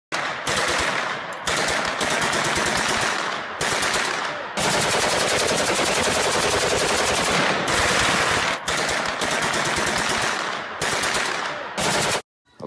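Rapid automatic gunfire, a movie-style sound effect laid over toy blasters, coming in about seven long bursts with short breaks between them.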